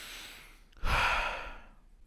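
A man's breath: the tail of a drawn-in breath, then, about a second in, a heavy exasperated sigh out that fades away.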